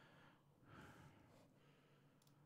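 Near silence: faint room tone, with a soft breath about half a second in.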